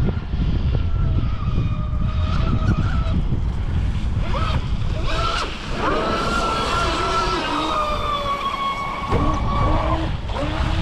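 Traxxas Spartan RC boat's brushless electric motor whining, its pitch rising and falling with the throttle and then held in a long, steady high whine over the second half as the boat runs flat out. Heavy wind rumble on the microphone throughout.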